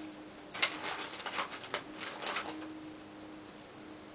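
Rustling and a run of irregular clicks and rattles as small makeup items are handled, lasting about two seconds from half a second in. A faint steady hum runs underneath.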